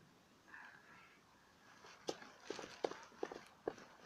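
Mostly quiet, with a loose string of faint short clicks and knocks, about eight, in the second half.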